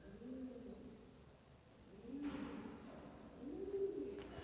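Faint, low cooing from a bird: about three soft hoots, each rising and falling over roughly a second. A faint rustle comes about two seconds in.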